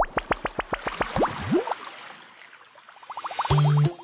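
Cartoon bubble sound effects over a title card: a quick run of about ten short plips rising in pitch, a longer upward slide, then a fast flurry of small rising bubbly pops. Music with a heavy bass note comes in near the end.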